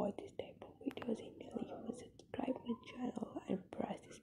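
Speech only: a voice talking softly, close to a whisper, with the words not clear.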